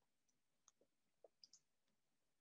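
Near silence, with a few faint, short clicks.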